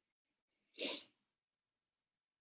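A single short sneeze, lasting under half a second, about a second in.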